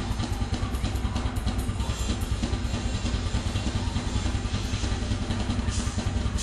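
Drum kit played in a fast, busy rhythm, with bass drum, snare and cymbals in a full music mix.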